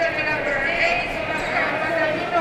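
Several voices shouting and calling out over one another across a large sports hall: coaches and spectators at a kickboxing bout.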